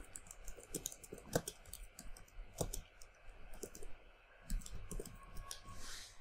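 Faint computer keyboard typing: a run of irregular key clicks as a short line of text is typed, with a brief pause a little after the middle.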